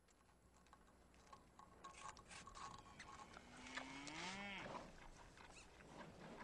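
A cow moos once, about three and a half seconds in: a single call that rises in pitch and then drops off. Under it, faint outdoor background with scattered small ticks fades up.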